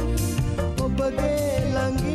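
Male vocalist singing a Sinhala pop song with a backing band of bass, drums and cymbals, the held, wavering vocal line carried over a steady beat.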